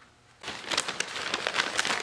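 Paper crinkling and rustling from a taped brown paper bag of rivets being picked up and handled. It starts about half a second in, after a brief near silence, as a dense run of small crackles.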